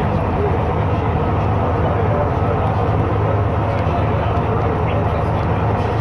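Leyland Titan PD2 double-decker bus's six-cylinder diesel engine running steadily as the bus drives along, heard from on board with road noise, at an even level throughout.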